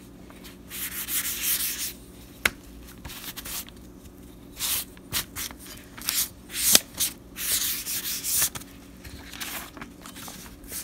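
Irregular rubbing strokes across paper as annatto dye is spread over a sheet, with a couple of sharp clicks about two and a half and seven seconds in.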